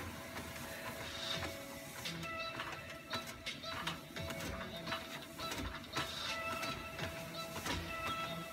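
Treadmill in use on a steep incline: irregular footfalls on the moving belt, over a steady high whine that sets in about two seconds in.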